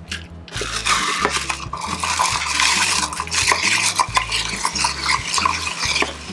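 Bar spoon churning crushed ice in a metal julep cup. It makes a continuous rattling scrape of ice against metal, with many small clinks, starting about half a second in.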